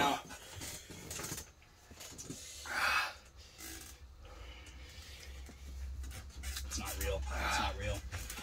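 A man breathing hard through his mouth against the burn of an extremely hot chili chocolate, with a sharp hissing exhale about three seconds in and ragged panting near the end.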